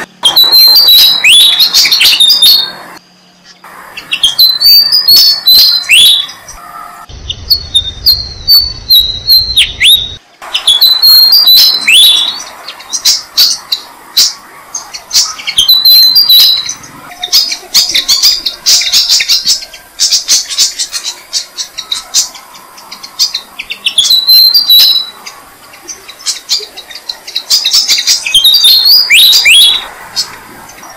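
Malaysian pied fantail nestlings giving shrill begging chirps as the parent feeds them at the nest. The chirps come in loud bouts of quick downward-sweeping notes, separated by short pauses.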